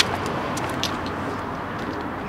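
Steady outdoor road-traffic noise, with a single sharp click right at the start.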